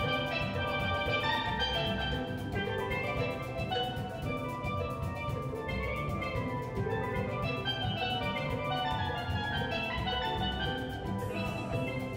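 Steel band playing: steel pans ring out in fast runs of struck notes over a steady drum beat.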